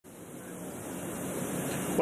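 A rushing noise, like wind on a microphone, swelling steadily and cut off suddenly.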